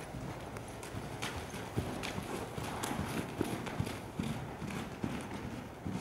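A horse's hoofbeats on a soft arena surface: a steady rhythm of dull thuds with a few sharper knocks.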